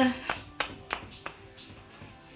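A woman's sung note breaks off, followed by four sharp hand claps about a third of a second apart. Faint music plays underneath.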